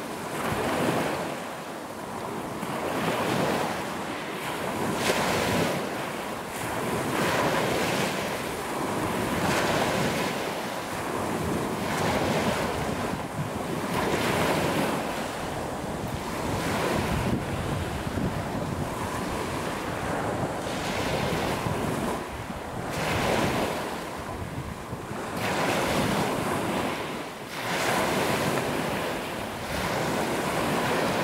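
Small waves breaking and washing up over a pebble beach, the surf swelling and fading every two to three seconds.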